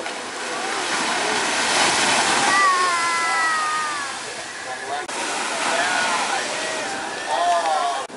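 Shorebreak waves crashing and washing up the sand, loudest about two seconds in. A person's long, slightly falling shout rises above the surf a few seconds in, and more shouting voices come near the end.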